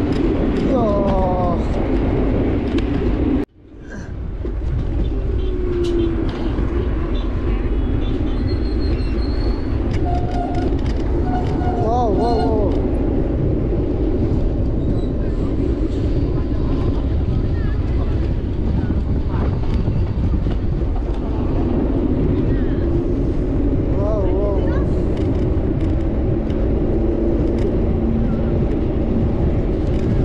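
Wind rushing over the microphone of a camera riding along on a moving electric scooter, a loud steady rumble that cuts out for a moment about three and a half seconds in. Muffled voices come through it now and then.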